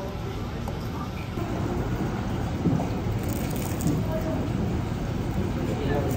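Outdoor café ambience: a steady low rumble of distant traffic under faint, indistinct conversation.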